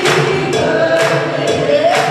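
A live worship band with a group of singers performing a gospel song: several voices singing together over keyboards, with a steady beat of percussion hits about twice a second.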